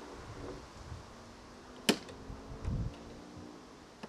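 One sharp metallic click about two seconds in, with a short ring after it, then a softer low knock, as the telescopic shaft of an electric trolling motor is slid up and clamped at a new height in its stern mount.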